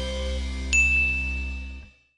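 The last chord of a short music jingle ringing out, with a single bright chime struck about 0.7 s in that rings and then fades with the music near the end.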